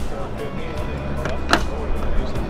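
Background music and distant voices over a steady low hum, with one sharp click about one and a half seconds in from the latch of a motorhome's exterior storage-compartment door being worked.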